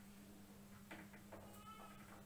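Faint marker strokes on a whiteboard, ending in a short high squeak from the marker tip near the end, over a steady low hum.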